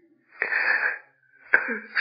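A man's audible intake of breath, a short hissing rasp of about half a second, taken in a pause in his speech; he starts speaking again near the end.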